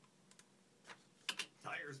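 A few sharp computer keystrokes while audio is being edited, followed near the end by a recorded voice-over beginning to play back.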